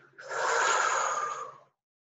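A woman's long audible breath, one unpitched airy breath lasting about a second and a half, then cutting off suddenly to silence.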